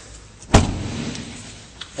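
The rear swing door of a 2008 Hummer H3 is shut: one loud slam about half a second in, followed by a low sound fading over about a second.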